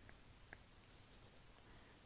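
Faint taps and scratches of a stylus writing on an iPad's glass screen: a small click about half a second in, then a soft scratching about a second in.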